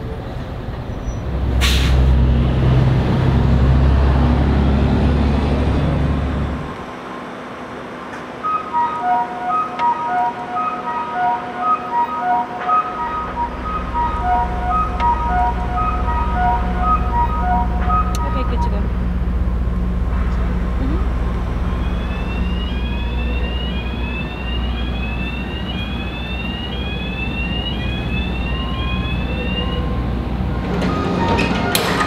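Heavy truck's diesel engine rumbling, then a repeating electronic beep pattern on three different pitches over a steady low engine drone. In the last part, a rapid series of short rising electronic tones, about two a second.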